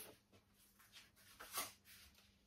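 Near silence: room tone, with one faint short sound about one and a half seconds in.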